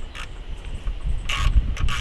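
Low rumble of wind on the microphone, with a few short hissy scraping noises, the loudest about a second and a half in, as parts are handled in the engine bay.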